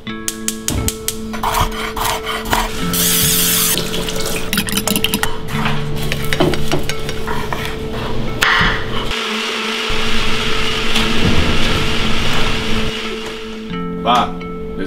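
Kitchen sounds: a gas stove's burner knob turned and its igniter clicking rapidly for the first couple of seconds, then clattering and hissing food-preparation noises and a stretch of steady noise like a blender running.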